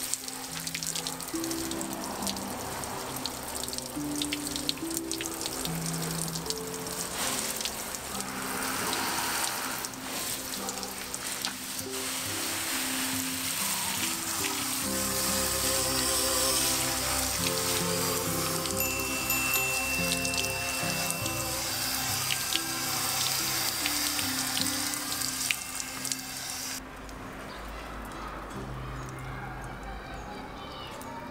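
Background music over the steady hiss of water spraying from a hose watering nozzle onto leaves. The spray cuts off near the end, leaving only the music.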